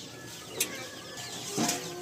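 Birds chirping in the background, with two short knocks of cookware, about half a second in and again near the end.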